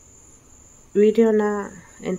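A voice repeating one syllable on a steady, held pitch, chant-like, coming in loud about a second in. A thin, steady high-pitched whine runs underneath throughout.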